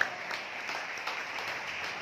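Congregation applauding: many hands clapping at once, steady through a short break in the sermon.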